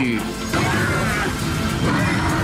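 Horror film soundtrack: dramatic music with a sudden crashing sound effect about half a second in.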